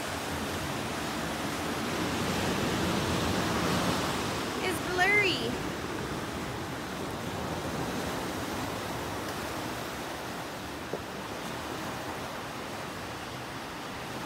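Ocean surf breaking and washing up the sand in a steady rush that swells a couple of seconds in. A short burst of voice cuts in about five seconds in.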